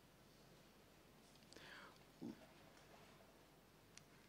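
Near silence: room tone, with a faint breath-like hiss and a brief soft sound a little after halfway.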